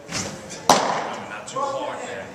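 A pitched baseball striking a catcher's mitt with one sharp pop about two-thirds of a second in, followed by a man's voice.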